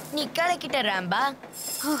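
A cartoon character's voice making a quick run of wordless exclamations, each sliding up and down in pitch, with one more short exclamation near the end.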